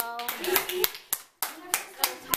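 A child's hands clapping, several quick irregular claps, with brief bits of children's voices between them.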